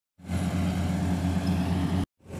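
Kubota AR96 crawler combine harvester running steadily as it works through a rice crop, an even low engine drone. It cuts in just after the start.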